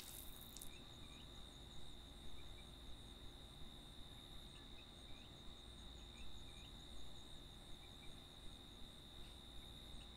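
Faint night crickets: a steady high-pitched trill with small chirps scattered through it. Right at the start, the hiss of the fountain's water spray cuts off.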